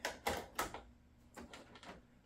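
Several light clicks and knocks from MTH RailKing O-gauge passenger cars being handled on the track.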